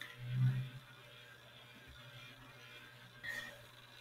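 Quiet room tone, with a brief low hum about half a second in and a faint short sound near the end.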